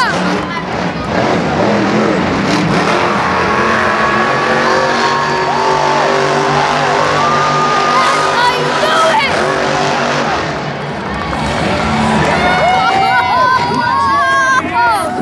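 Monster truck engines running loud and steady, with people yelling and whooping over them, the shouts growing near the end.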